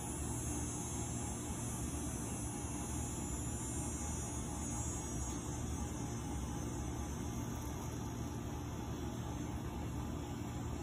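A steady low hum with an even hiss above it, unchanging throughout, with no beat or distinct events.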